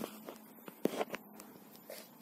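A few soft clicks and knocks, the loudest a little under a second in with two smaller ones just after, over a faint steady room hum.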